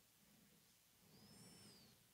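Near silence, with one faint whistled call about a second in that rises and then falls, like a distant bird call.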